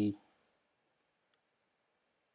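The tail of a spoken word, then two faint computer keyboard keystroke clicks about a second in, a third of a second apart.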